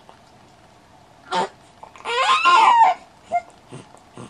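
One-month-old baby crying with a pacifier in her mouth: a short cry about a second and a half in, then a longer, louder cry that wavers up and down in pitch, a fussy baby who won't settle back to sleep.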